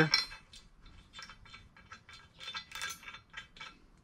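Steel Allen-head bolts from an engine-mount bolt kit clinking against each other and against metal as they are handled and set out: a string of small, irregular metallic clicks.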